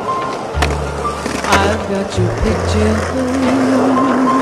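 The instrumental intro of a slow ballad, with bass and guitar notes. Under it, a skateboard's wheels roll on asphalt, and there are two sharp clacks of the board, about half a second and a second and a half in.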